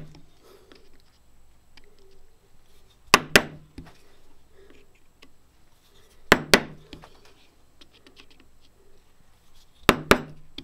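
A wood chisel held upright is tapped into a gunstock to chop in the outline of a flintlock lock's bridle mortise. Its handle takes pairs of sharp taps, about every three seconds.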